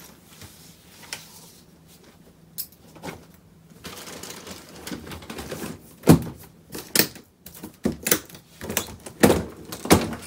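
Soft cloth rustling as a towel is smoothed over packed clothes in an open suitcase. Then the lid of the aluminium hard-shell suitcase is shut and fastened and the case is stood upright: a series of sharp clicks and knocks in the second half.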